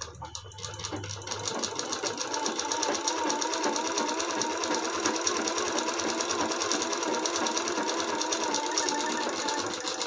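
USHA sewing machine running in one long stitching run as a folded half-inch hem is sewn along a blouse panel's edge: a rapid, even needle rhythm that speeds up over the first second or two, holds steady, and slows just before the end.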